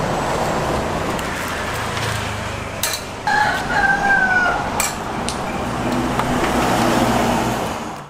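A rooster crowing once, a single stepped call about three seconds in lasting just over a second, over steady outdoor background noise. A couple of sharp clicks fall just before and just after the crow.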